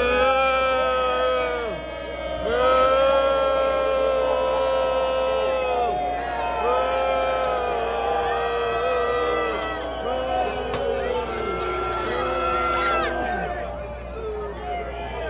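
A voice singing a slow melody of long held notes, about six drawn-out phrases each dropping in pitch as it ends, over the noise of a stadium crowd.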